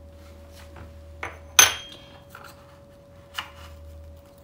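Crockery and a spoon clinking while seasoning is added to a dish: one sharp, ringing clink about a second and a half in, with a few softer taps around it, over a faint steady hum.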